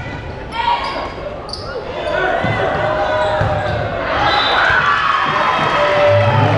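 Volleyball rally in a large gymnasium: a few sharp ball contacts in the first two seconds, over crowd chatter and shouting that grows louder about two seconds in as the point plays out.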